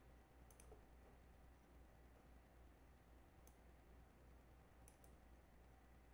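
Near silence: quiet room tone with a few faint computer mouse clicks as arrows are drawn on the screen.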